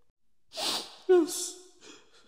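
A person crying: a sharp, breathy sniffle about half a second in, then a short sob about a second in.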